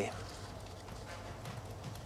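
Quiet pause with no speech: faint background hiss and a low steady hum.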